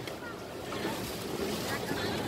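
Water lapping against a small boat on a lake, with wind buffeting the microphone and faint voices in the background.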